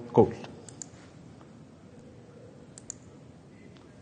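A man's voice ends a word at the start, then quiet room tone with a few faint clicks, a quick pair about three seconds in, as presentation slides are advanced.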